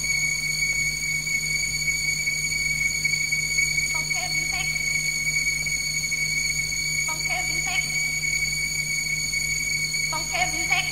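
Steady high-pitched whine and low hum from a ripped cassette recording after the music stops, with faint short warbling sounds about every three seconds.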